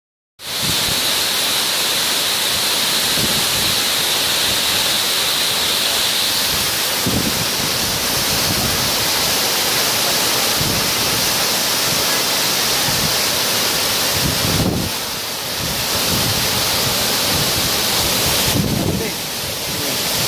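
Waterfall pouring onto rocks into its plunge pool: a loud, steady rush of falling water that dips slightly twice in the last few seconds.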